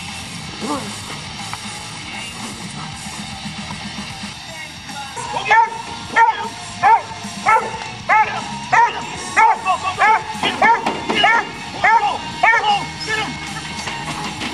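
A dog giving a quick run of short, high-pitched yips, about one and a half a second, starting about five seconds in after a stretch of steady hiss.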